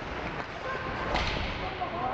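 Ice hockey play on a rink: skates scraping the ice under a steady hiss, and one sharp slap of a stick on the ice or puck about a second in.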